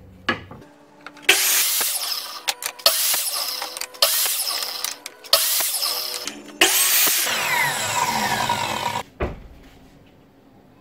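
A 15-amp 10-inch Ryobi sliding miter saw running and cutting through wood strips in a series of short runs, one after another. In the last run the pitch falls as the blade slows, then the sound cuts off suddenly.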